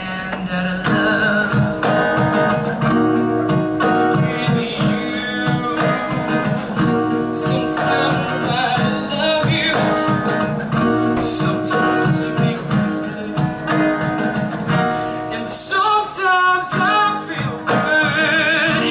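A solo singer performing with a strummed acoustic guitar, amplified through a PA, with a wavering held vocal note near the end.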